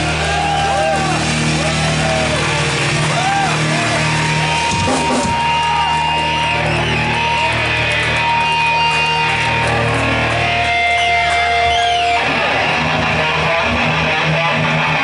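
Live heavy metal band playing an instrumental passage: loud distorted electric guitars over sustained bass notes, with sliding, bending guitar lines and a few long held notes, and no vocals.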